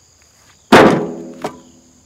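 A split stick of firewood tossed onto other wood lands with one loud clunk that rings briefly, followed by a smaller knock under a second later. A steady high buzz of insects runs underneath.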